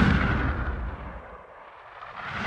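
Boom-like sound effect under a title card, dying away over about a second and a half. A second swell begins to rise near the end.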